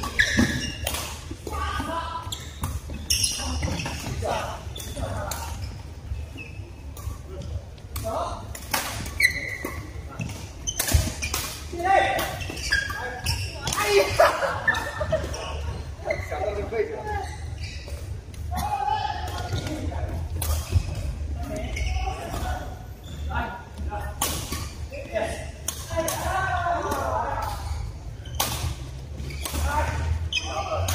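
Badminton rackets striking a shuttlecock: sharp hits at irregular intervals, echoing in a large hall, over a low steady hum and people's voices.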